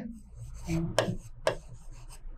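Writing by hand on a board: several short scratchy strokes about half a second apart as a word is written.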